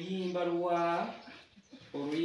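A person's voice drawing out one long, steady note for about a second, then stopping.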